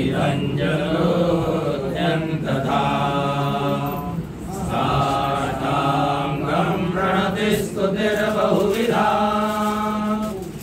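Male voices chanting a Sanskrit hymn to Shiva in steady, even-pitched recitation. The phrases are broken by short breath pauses every two seconds or so.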